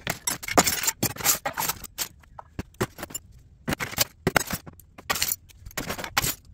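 Small pieces of mixed metal scrap clinking and rattling as they are handled and dropped into plastic tubs. The clatter comes in spells with short gaps between them and is busiest in the first two seconds.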